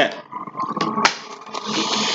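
Tarot cards being shuffled: a steady rustling noise starts suddenly about a second in and carries on past the end, after a quieter moment.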